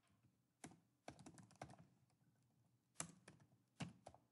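Faint computer-keyboard typing: irregular single keystrokes and short runs of clicks with pauses between them.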